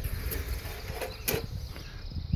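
Low, steady background rumble of distant highway traffic, with one light click about a second and a quarter in.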